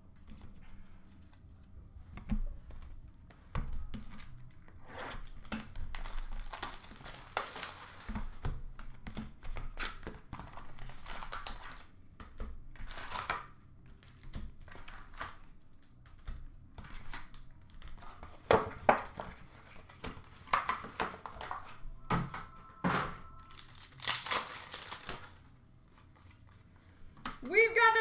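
Plastic wrapper of a trading-card pack crinkled and torn open in irregular rustling bursts, with a few light knocks of cards being handled.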